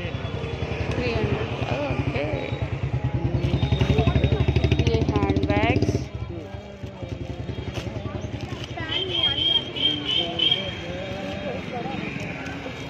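A motorcycle engine running close by, a fast low throb that builds over the first few seconds and cuts off suddenly about six seconds in, with street-market voices around it.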